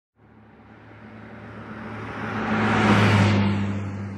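A motor vehicle passing by: a steady low engine hum under road noise that swells to a peak about three seconds in and then fades away.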